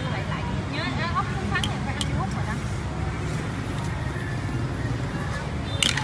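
Busy street ambience: a steady low rumble of road traffic with voices in the background and a few sharp clicks.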